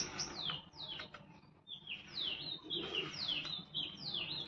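A bird chirping, a quick series of short notes that each slide downward in pitch. The chirps come in two runs, with a quieter gap of about a second near the start.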